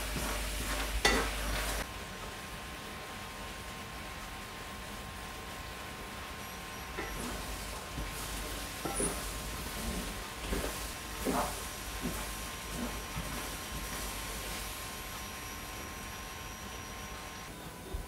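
Almonds in boiling sugar syrup sizzling in a stainless steel frying pan while a wooden spatula stirs them, with occasional soft scrapes and knocks against the pan. The syrup is boiling off its water on the way to caramelising. A faint steady high tone runs underneath most of it.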